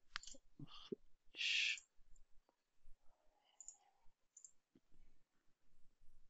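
Faint computer mouse clicks, a few in the first second, with a short hiss about a second and a half in.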